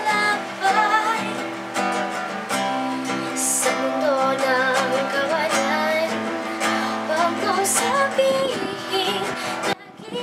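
A woman singing a slow song to her own strummed acoustic guitar, which has a capo on the neck. The sound drops away briefly just before the end.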